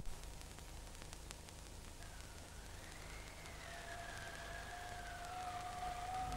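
Faint soundtrack tones: from about two seconds in, a soft whistle-like tone slowly wavers up and down in pitch, and a steady lower tone joins it and holds.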